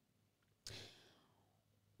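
Near silence, broken a little under a second in by one short, faint breath into the microphone.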